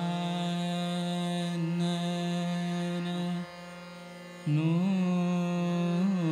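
Male Hindustani classical vocalist singing khayal in Raag Chhaya Nat: one long steady held note, a pause of about a second, then a new phrase with gliding, ornamented pitch. Tanpura drone and harmonium accompany.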